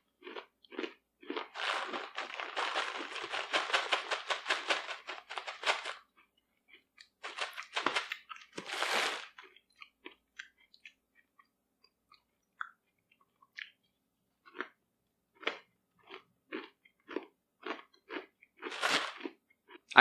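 Close-up chewing of crunchy meat granola made of dehydrated beef, coconut flakes and macadamia nuts: a dense run of crunches for a few seconds, another cluster, then slower separate crunches thinning out toward the end.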